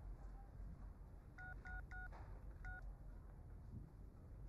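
Mobile phone keypad beeping as keys are pressed. There is a quick run of four short beeps about a second and a half in, then one more near the three-second mark.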